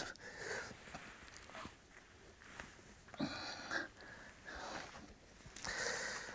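Faint, scattered short rustles and breaths from a person handling a flint core and tools, the clearest about halfway through.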